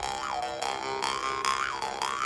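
Mohan Dream State bass jaw harp played with repeated plucks over a steady deep drone. The mouth-shaped overtone twangs rise and fall twice.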